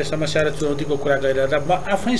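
Speech only: a man talking steadily in a low voice.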